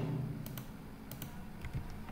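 Computer keyboard keystrokes: a few scattered, separate taps as a number is entered.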